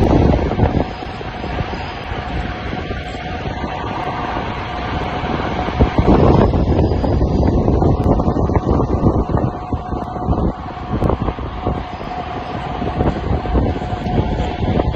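Wind buffeting the microphone of a camera carried on a bicycle descending at speed, with a steady rumble of tyres on asphalt. The rush is loudest at the start and again about six seconds in.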